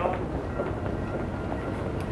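Steady low outdoor rumble on the microphone, with a brief knock right at the start.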